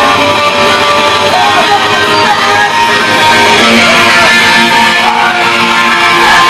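A rock band playing a song live and loud in a small rehearsal room, led by two electric guitars played hard.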